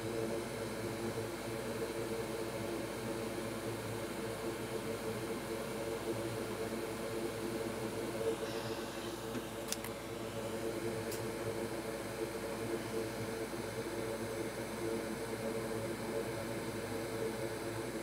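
An electric fan at a board-repair bench whirring steadily with a low hum, and a couple of faint ticks about halfway through.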